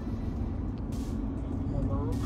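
Steady low rumble of road and engine noise inside the cabin of a moving Mercedes-Benz car.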